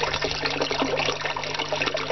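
Water pouring from pipes into an aquaponics sump tank, splashing steadily onto the water's surface, with a steady low hum underneath.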